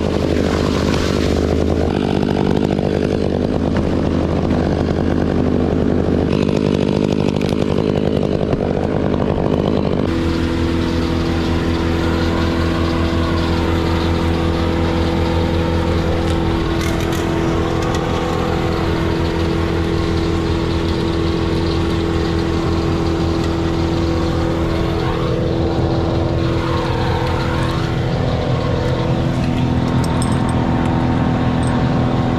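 Gas chainsaw running during the felling of a maple tree's trunk sections. About ten seconds in, the sound changes abruptly to a steadier engine hum that holds an even pitch.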